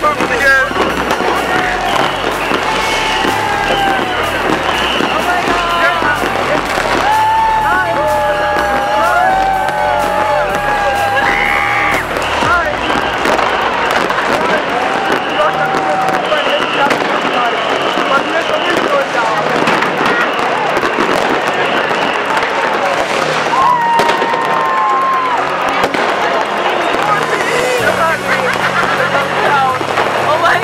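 Fireworks going off all around, with a steady run of pops and bangs, over a crowd's voices and background music.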